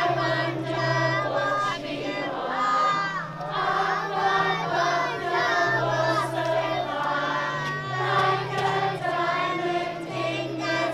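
A group of voices, children among them, singing a song together over an instrumental backing that holds long, steady low bass notes.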